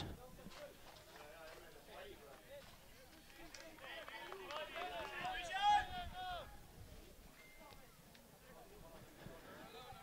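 Faint, distant voices of players and bench staff calling out, picked up by the pitchside microphones over quiet stadium ambience. The calls are loudest and most frequent between about four and six and a half seconds in.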